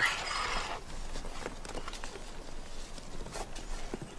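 Irregular knocks and scrapes of hand tools working hard rock and loose rubble, with a hiss in the first second.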